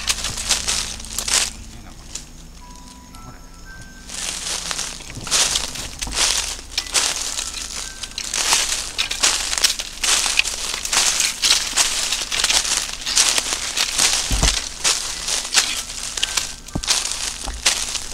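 Footsteps crunching through a thick layer of dry fallen leaves, a quick irregular crackling that drops away for a couple of seconds about two seconds in, then resumes.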